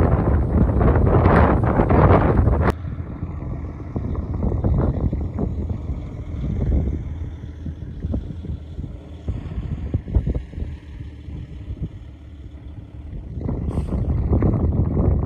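Wind buffeting the microphone, loud for the first few seconds, then cut off suddenly and followed by a quieter, uneven rush of wind with a few faint knocks.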